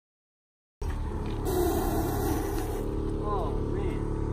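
Car engine idling steadily, starting just under a second in after a moment of silence, with a burst of hiss about a second and a half in and brief voices near the end.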